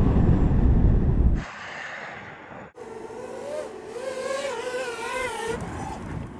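Loud rumble of tyre, road and wind noise at the wheel of a Tesla Model S Plaid braking hard, cut off sharply about a second and a half in. From about three seconds in to near the end, a high-speed camera drone's propellers whine, their pitch wavering up and down.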